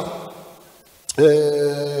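A man's voice into a microphone: his words trail off into a brief pause, then about a second in he holds one long, steady chanted note.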